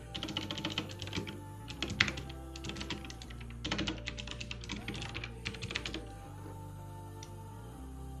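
Rapid typing on a computer keyboard in several quick bursts of key clicks, stopping about six seconds in. Background music plays underneath.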